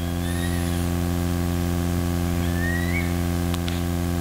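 Steady electrical hum from the microphone and sound system, holding one low pitch with its overtones. A few faint high chirps rise over it, and there is a faint click near the end.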